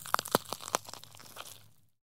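Title-sequence sound effect: a run of sharp crackling, crunching clicks over a low steady hum, fading out near the end.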